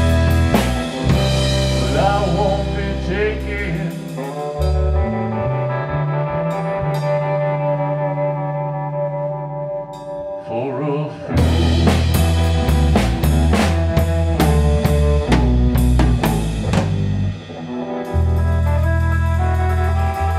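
A rock band playing live with electric guitar, bass guitar and drum kit. The drums drop out for several seconds in the middle while guitar and bass chords ring on, then come back in with a full beat.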